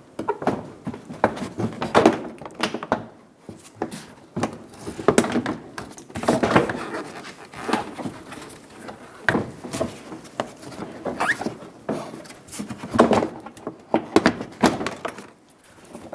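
Plastic front bumper cover of a Subaru Outback being pushed into place: irregular knocks, clicks and thunks of plastic against plastic, some louder than others.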